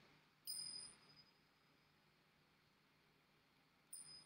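Tingsha cymbals struck together twice, about three and a half seconds apart, each giving a brief high-pitched ring that dies away within about a second.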